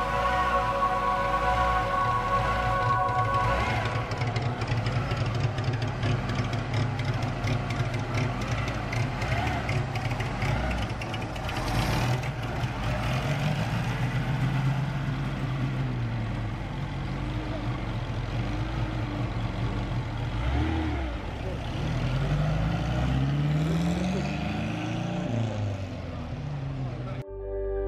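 Vintage open cars, a red Alfa Romeo roadster and a small green two-seater among them, pulling away slowly with their engines running. Near the end an engine revs up several times, each rev rising in pitch. Music plays over the first few seconds.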